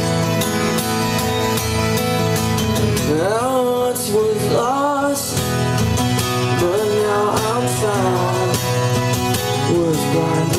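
Live acoustic music: two acoustic guitars strummed and picked under a man singing a drawn-out melody that slides up and down in pitch.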